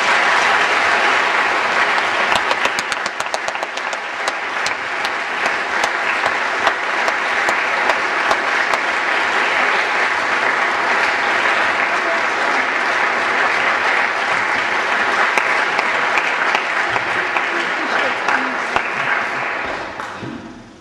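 Large audience applauding: it breaks out all at once and keeps up steadily as thick clapping, then dies away near the end.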